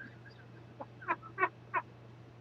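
Soft, stifled chuckling: about four short breathy laughs in quick succession in the second half, over a low steady hum.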